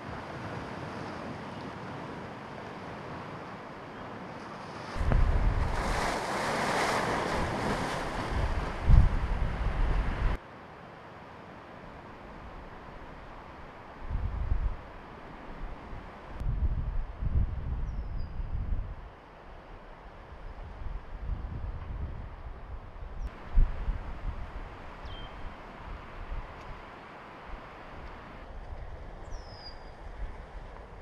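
Wind gusting against the microphone over the steady wash of choppy lake waves. The loudest stretch of gusts comes about five seconds in and lasts some five seconds before stopping abruptly; shorter gusts follow in the second half.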